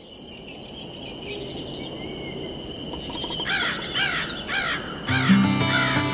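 Intro of an electronic song: a steady high tone, then from about halfway a bird calling over and over, about two calls a second, each rising and falling. Music comes in near the end with low sustained chords.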